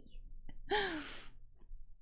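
A woman's short breathy sigh-like vocal sound about a second in, its pitch dipping and then rising, with a faint click just before it.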